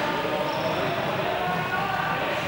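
Indistinct chatter of many voices overlapping, echoing in a large sports hall, steady throughout.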